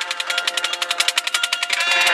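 Marching band drumline playing a fast, even run of snare strokes over held notes from the band, the held notes swelling louder near the end.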